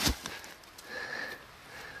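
A person sniffing once through the nose, about a second in, a short soft hiss.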